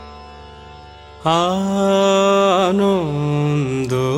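Music: a low sustained drone, then about a second in a singer comes in loudly. The singer holds a long melodic line that steps slowly downward with quick wavering ornaments, in a South Asian classical style.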